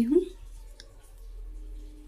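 The end of a spoken word, then a damp cloth towel wiped over a face, heard as faint soft clicks and rubbing over a low steady hum.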